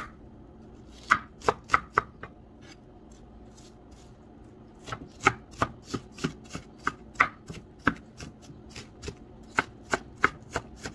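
Chef's knife chopping a white onion on a wooden cutting board: four quick strikes about a second in, a pause of nearly three seconds, then a steady run of strikes, about three a second.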